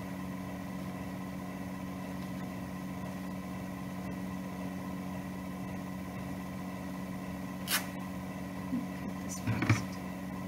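Steady electrical hum with several fixed tones, under faint handling of fabric. A single sharp click comes about three-quarters of the way in, and a few short handling sounds near the end as the scissors are taken up to trim the flower.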